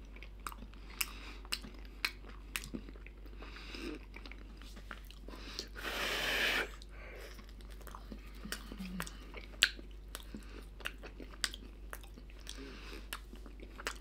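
Close-up chewing of a tough microwaved dough snack pocket by a toothless mouth, gumming the food with many small wet clicks and smacks. One longer rush of noise about six seconds in.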